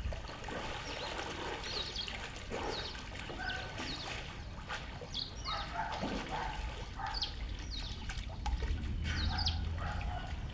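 Swimming-pool water lapping and trickling against the tiled edge, stirred up by a swimmer crossing the pool. Birds chirp repeatedly in short, high calls throughout.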